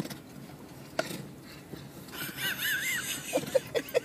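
A woman's high, wavering shriek of surprise about halfway through, with a hiss of noise under it, followed by short bursts of laughter near the end.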